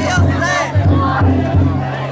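Large taiko drum inside a chousa drum float beaten in a steady repeating rhythm, with the float's bearers shouting and chanting together over it.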